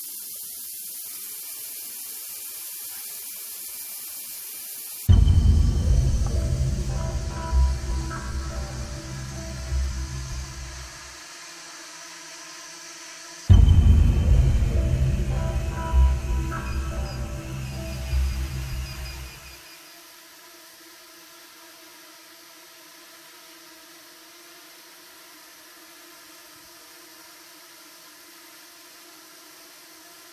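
A steady hiss, then two deep booming drum hits about eight seconds apart, each struck by a small quadcopter drone and ringing out for several seconds. A faint steady hum of the hovering drones runs underneath.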